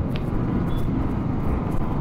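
Yamaha R15 V3 motorcycle's single-cylinder engine running as the bike gathers speed slowly in traffic, heard with steady low wind and road noise on the bike-mounted microphone.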